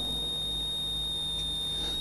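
A pause in amplified speech: a steady high-pitched tone with a low hum beneath it.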